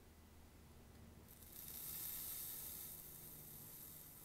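Faint sizzle of a rebuildable atomiser's coil being fired on an e-liquid-primed wick, vaporising the juice. It starts about a second in, is strongest soon after and slowly fades.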